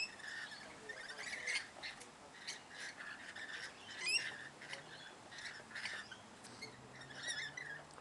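Rainbow lorikeets at a feeding tray giving scattered short, high squawks and chatter, with a sharp rising screech about four seconds in.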